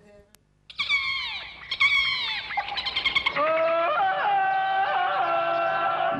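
Jungle-themed TV ident jingle: after a brief silence, two sharply falling sliding tones about a second apart, then a melody of held notes stepping up and down.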